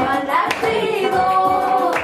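Women singing a Somali song, with hand claps keeping time, over oud accompaniment.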